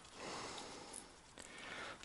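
Faint breathing of the person close to the microphone: two soft breaths through the nose, about a second apart.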